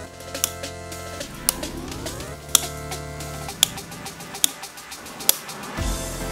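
Background music with a sharp snip about once a second, six in all: bonsai scissors cutting Shimpaku juniper foliage.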